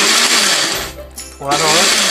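Personal bullet blender running in a short pulse, grinding mint leaves and green chillies into a paste. The motor runs loud at full speed, then eases off about a second in.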